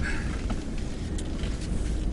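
Steady low engine and drivetrain rumble heard inside the cab of a 2018 Ford F-150 pickup creeping along an off-road trail, with a couple of faint ticks.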